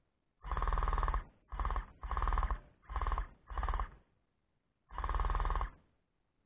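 Electric gel blaster rifle firing six short full-auto bursts, the gearbox buzzing with a rapid rattle of shots in each burst, with a longer pause before the last one.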